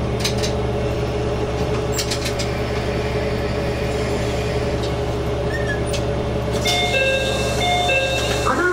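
Diesel railcar engine idling steadily while the train stands at a station, heard from the cab, with a few sharp clicks. Near the end a chime of several held tones starts.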